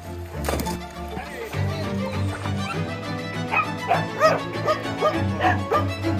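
Background music over dogs barking and yipping, with a run of several barks in the second half. A splash about half a second in as a dog jumps into the pool.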